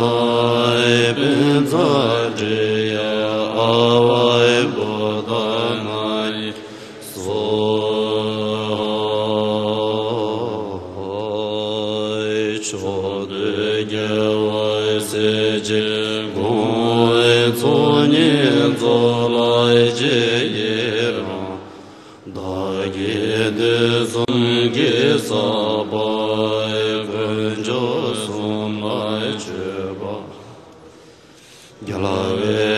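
An assembly of Buddhist monks chanting in unison: a slow, melodic liturgical chant of a mantra and an offering prayer, with long held notes over a steady low drone. The phrases are broken by short pauses for breath.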